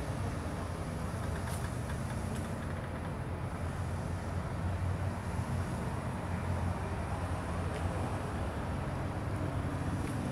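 Fire engines running steadily: an even low rumble with a few faint ticks above it.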